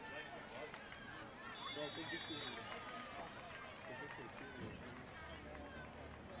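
Faint, distant voices of players and spectators shouting and talking around an outdoor football field, with a brief steady high tone about a second and a half in.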